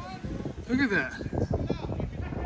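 Speech only: a few brief words from people's voices, over low rumbling background noise.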